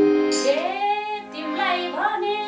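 A woman singing a dohori folk melody in a long, gliding line, entering about half a second in over a harmonium's steady held chord.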